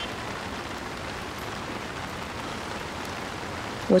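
A steady, even hiss of background ambience with no distinct events, like light rain.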